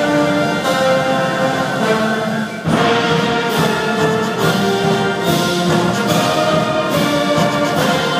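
Live high school ensemble playing sustained orchestral chords in an auditorium. About two and a half seconds in the sound briefly drops, then comes back in fuller, with sharp accented hits about once a second.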